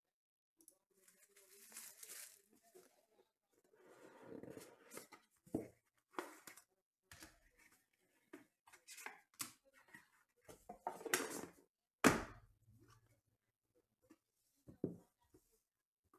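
Hands handling and opening trading card boxes: tearing and rustling of the packaging with scattered clicks, and a sharp knock about twelve seconds in.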